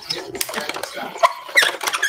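A woman laughing lightly, mixed with a few sharp clicks and knocks of things being handled on a craft desk.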